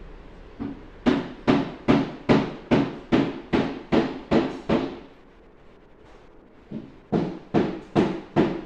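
Loud, evenly spaced knocks on something hard, a little over two a second: a run of about ten after a single lighter tap, a pause, then a lighter tap and three or four more near the end.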